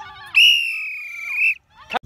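A sports whistle blown in one loud, high-pitched blast lasting a little over a second, with a slight warble, starting about a third of a second in.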